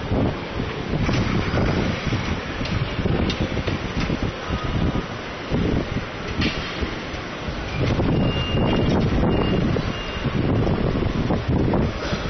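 Gusty wind buffeting a phone's microphone in surges every second or two, over the steady noise of street traffic.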